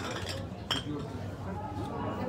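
Background voices murmuring, with one sharp clink that rings briefly a little under a second in.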